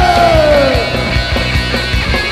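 Punk rock band playing live: drums hitting a steady beat under loud guitars, with a held note sliding down in pitch during the first second.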